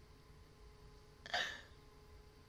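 A woman's single short, hiccup-like vocal burst, about a second and a quarter in, over a faint steady hum.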